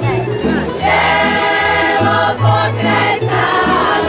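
A women's folk choir singing a folk song together, over a low bass line that steps from note to note.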